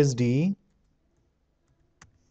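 A man's voice saying "percentage d", then quiet apart from a single faint computer keyboard keystroke near the end.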